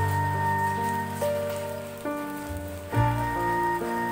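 Slow, soft instrumental music: long held melody notes that change about once a second over a low sustained bass, mixed with the steady hiss of falling rain.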